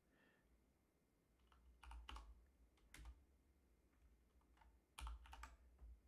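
Faint keystrokes on a computer keyboard: a few scattered taps, then a short run of them near the end, as a line of text is typed into a terminal editor.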